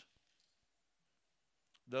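A pause in a man's speech: near silence, with the tail of his phrase at the very start and a faint click just before he starts speaking again near the end.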